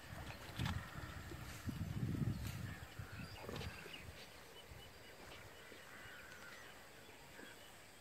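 Small birds chirping now and then over quiet outdoor ambience, with a few low rumbles in the first few seconds.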